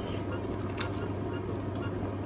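Thick mince-and-vegetable sauce bubbling in an enamelled casserole pot while a ladle stirs it, with a few faint clicks. A steady low hum runs underneath.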